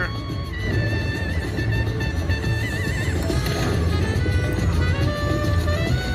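Chica Bonita slot machine playing its free-spin bonus music over a steady beat, with a warbling tone about two seconds in, as one free spin of the reels runs and lands.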